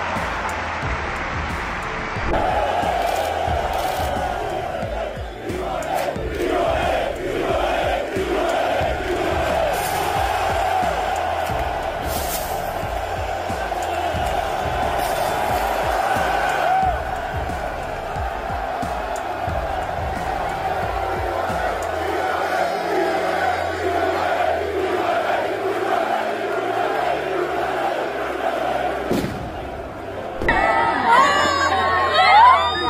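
Large crowd of football fans chanting and singing in unison, over background music with a steady low beat.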